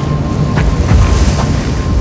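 Loud, steady rush of blizzard wind with a deep rumble underneath, crossed by a few faint clicks and a thin steady high tone.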